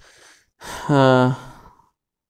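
A man's voice: a short breath in, then one drawn-out voiced sigh that dips in pitch at first and then holds for about a second before fading.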